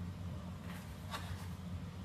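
A steady low hum, with two faint, brief scrapes or clicks of kitchen utensils being handled a little under and a little over a second in.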